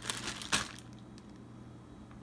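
A single sharp knock or click about half a second in, then faint room noise with a steady low hum.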